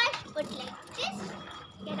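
Short, faint snatches of a child's voice with a few breaks between them, ending on the start of a spoken word.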